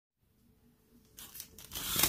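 A fabric curtain being pulled open along its rod: a rough rustling slide that starts about a second in and grows louder toward the end.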